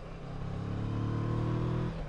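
Kawasaki Versys 650 parallel-twin engine pulling under acceleration on the road, heard over wind noise. The engine note drops away near the end.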